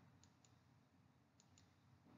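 Near silence, with two pairs of faint, short clicks about a second apart.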